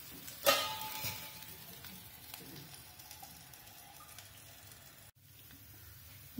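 Oil sizzling softly on a hot tawa under mini pizza bases, fading gradually. About half a second in there is a sharp clink that rings briefly, and the sound drops out for an instant near the end.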